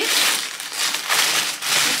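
Tissue paper rustling and crinkling as it is unfolded by hand, in a run of uneven rustles.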